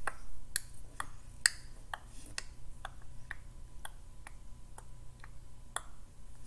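A steady, evenly timed series of sharp clicks, about two a second, like a ticking clock.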